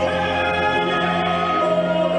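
A male baritone sings long held notes in Korean, in an operatic musical-theatre style, over instrumental accompaniment.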